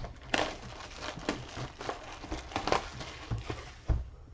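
Trading cards and cardboard card-box packaging handled by hand: scattered small clicks, taps and rustles of cards being shuffled and slid. Near the end come a couple of soft thumps as the box is handled on the table.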